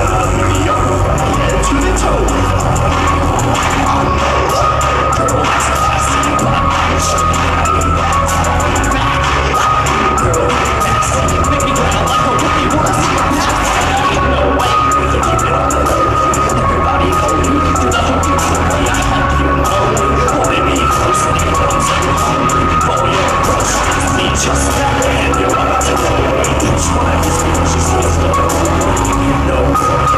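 Live rap performance through a club PA: a loud electronic beat with deep bass that drops in and out and a steady high synth line, with the rapper's voice over it.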